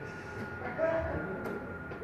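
A quiet pause in the sermon: low room noise in a hall with a faint, steady high-pitched whine running through it.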